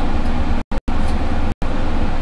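Steady loud background rumble and hiss with no speech, broken by three brief, abrupt dropouts to dead silence.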